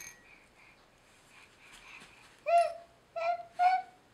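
An infant making short high-pitched squeals: three quick squeaks in the second half, each rising and falling in pitch.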